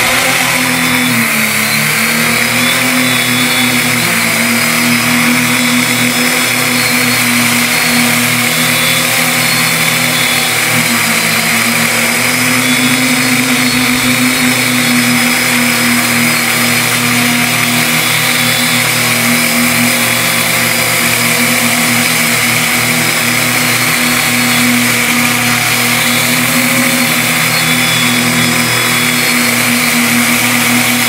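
Electric motors and propellers of a Y6 coaxial multicopter (six rotors on three arms) in flight: a loud, steady buzzing whine whose pitch dips slightly about a second in, then holds with small wavers as the craft hovers and climbs.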